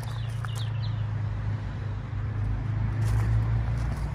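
A car engine idling with a steady low hum, and a few faint bird chirps about half a second in.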